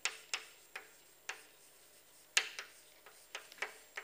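Chalk tapping on a blackboard while words are written: a series of sharp, irregularly spaced clicks, about eight or nine in all.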